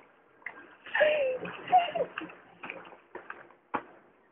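A person's voice in short, unclear bursts, with a single sharp slap-like sound near the end.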